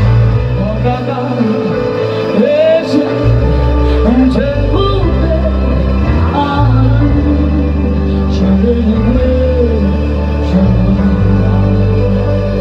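Live gospel worship song: a woman singing into a microphone over sustained keyboard chords and bass, her voice sliding through runs.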